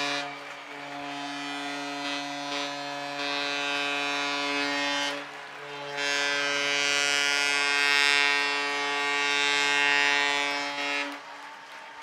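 A deep, steady horn sounds in two long blasts of about five seconds each, with a short break between them, over a crowd cheering and clapping: the ballpark's celebration of a home run.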